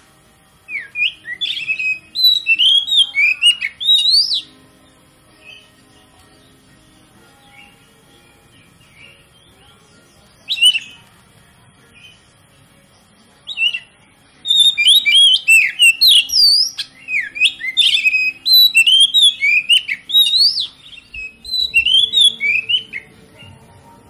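Oriental magpie-robin singing quick, varied whistled phrases. There is a phrase near the start and a short snatch near the middle, then a long unbroken run of song through most of the second half.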